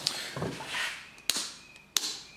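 Two sharp clicks of an old-style round light switch being flicked, the second near the end, after some light handling rustle.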